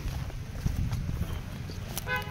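Footsteps of several people walking through long grass and weeds, with a steady low rumble on the microphone and a few faint knocks.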